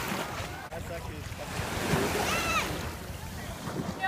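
Sea water washing in small waves at a sandy shore, a steady rush, with wind on the microphone and a distant voice briefly about two seconds in.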